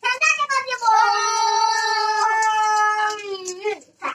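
A child holding one long, high wailing vocal note for about three and a half seconds. The pitch slides down a little at first, then holds steady before it stops.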